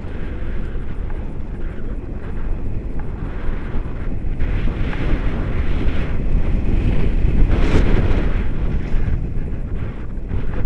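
Wind from a paraglider's flight rushing over the camera microphone: loud, steady buffeting that swells briefly about three quarters of the way through.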